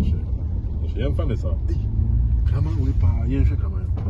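Steady low rumble of a car's engine and road noise heard from inside the cabin while driving, with voices talking over it in short stretches.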